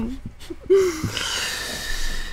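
A person's voice making a short hummed tone, then about a second of breathy hissing.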